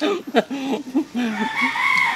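A rooster crowing once: one long call that rises and falls, starting just past halfway through.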